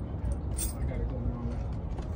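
Steel tire chain on a semi's dual tire clinking faintly once as it is handled and its cam lock worked, over a steady low rumble.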